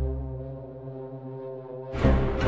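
Dramatic background music: a low, held brass-like drone that slowly fades, cut by a loud new hit at the very end.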